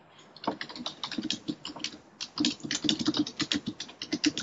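Computer keyboard typing: a quick run of keystrokes, with a short pause about two seconds in before the typing resumes.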